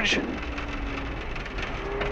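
Cabin noise inside a Subaru Impreza STi rally car driving on gravel: a steady rush of tyre and gravel noise with the flat-four engine running underneath as a faint even note.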